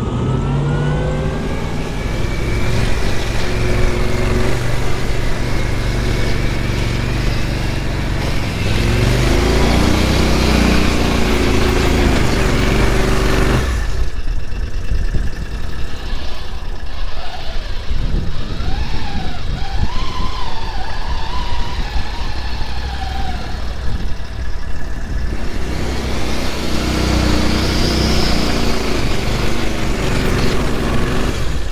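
Argo amphibious all-terrain vehicle engine running under way over rough ground, with a steady engine note and low rumble. About 14 seconds in the sound changes abruptly to a fainter, wavering engine note under heavy wind noise, and the engine comes up loud again near the end.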